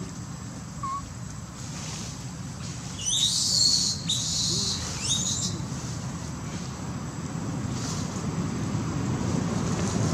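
Three high-pitched squealing animal calls in quick succession, each opening with a short upward sweep and lasting under a second, about three seconds in, over a steady low background rumble.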